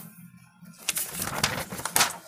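Paper pages of a coloring book rustling as they are leafed through. The rustling starts about a second in and ends with a sharp crackle of paper.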